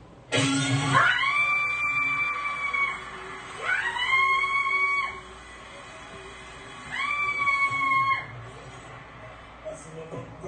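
Live concert audio from a fan-camera recording: three long high tones, each sliding up and then holding for one to two and a half seconds, about three seconds apart, with a low hit at the start of the first.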